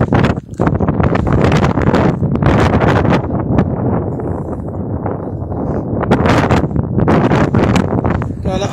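Wind buffeting a phone's microphone in a loud, steady rumble, with irregular footsteps crunching on stony ground.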